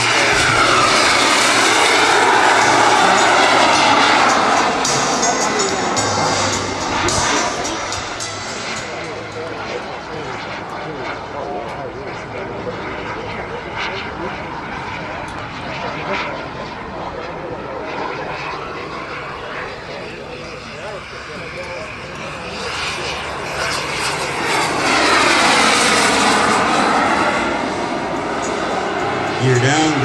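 Turbine-powered radio-controlled A-10 model jet flying past twice: loud at the start, fading away, then loud again about three-quarters of the way through, its whine shifting in pitch as it goes by.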